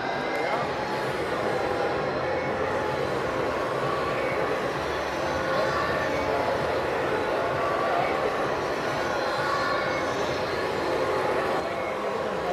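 Hooben 1/16-scale RC Abrams M1A2 SEP model tank driving, its digital sound unit playing a simulated tank engine sound through its small speaker over the whine of its drive motors and the rattle of its tracks. The sound runs steadily.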